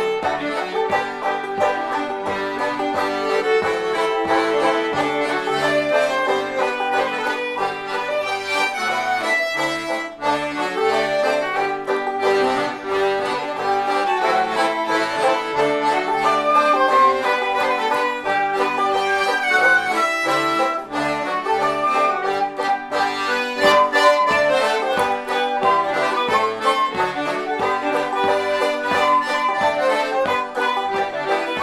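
Live acoustic folk tune played together on fiddle, diatonic button accordion and banjo, with a steady rhythm.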